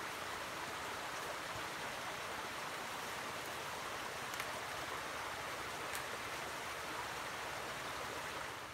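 A steady rushing outdoor noise with a few faint clicks about halfway through.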